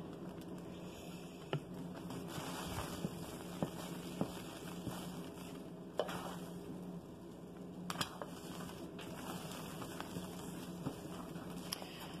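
A spatula stirring thick, cooking hot-process lye soap in a crock pot: faint scraping and churning with a few light clicks against the crock, the sharpest about six and eight seconds in, over a steady low hum.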